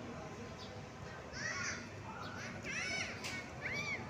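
Outdoor ambience with a low steady background and several short, high calls that rise and fall, starting about a second in and repeating a few times.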